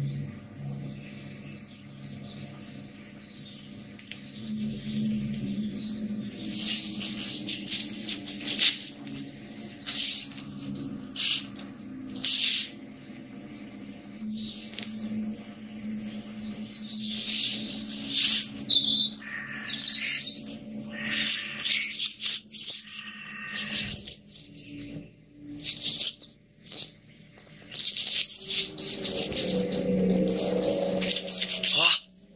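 A low, steady droning hum of unknown origin, one of the 'strange noises' reported worldwide, with birds chirping over it at intervals.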